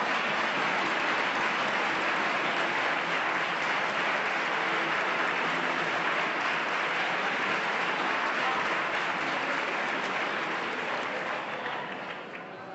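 Sustained applause from a large group of parliamentary deputies, a dense steady clapping that thins out near the end.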